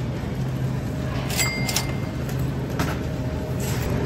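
Shopping cart wheels rolling and rattling over a supermarket floor against a steady low hum of store noise. There are a few sharp clacks about one and a half seconds in and again near three seconds, the first with a brief high beep.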